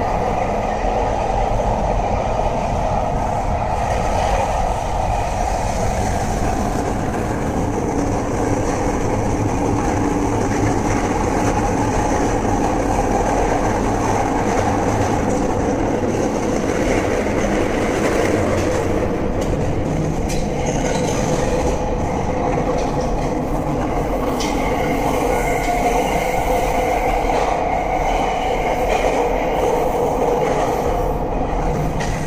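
Running sound aboard a TWR Rinkai Line 70-000 series electric train fitted with Mitsubishi GTO-VVVF traction equipment: a steady, loud rumble of wheels and running gear on the track, with thin high whining tones over it. A further whine joins in during the last several seconds.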